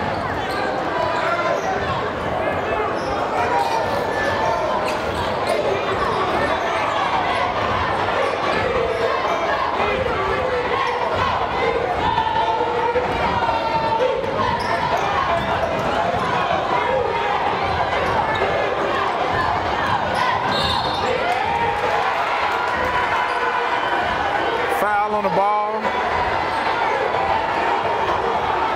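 A basketball dribbling on a hardwood gym floor over the steady chatter and calls of a large crowd in the stands.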